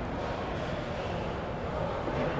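Steady background noise of a large indoor exhibition hall: an even, low wash of sound with no distinct events.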